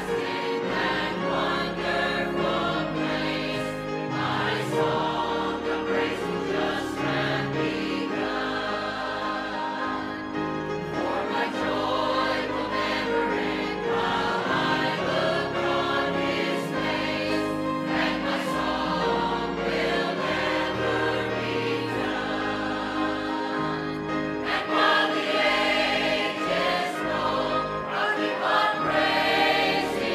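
Mixed church choir of men and women singing.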